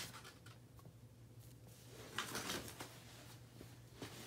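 Quiet room with faint rustling and a few light clicks, and a soft brushing rustle about two seconds in, over a low steady hum.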